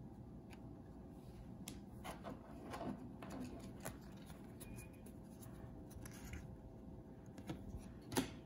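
Trading cards being handled and slid against one another in the hands: faint rustling with scattered light clicks.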